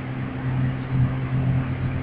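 Steady low hum with an even hiss underneath: constant room background noise, with no distinct event.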